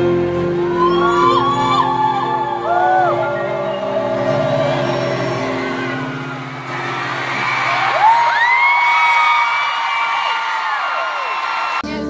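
Live pop vocal with keyboard accompaniment: short sliding sung phrases over held chords, then one long high note held for about four seconds, with crowd whoops underneath.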